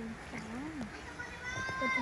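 People's voices: low murmured sounds early on, then a high-pitched, drawn-out squeal held for about half a second near the end, just before laughter.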